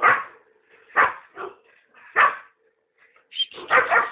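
Greyhounds barking during play: single sharp barks at the start, about a second in, just after that and a little after two seconds, then a quick run of three or four barks near the end.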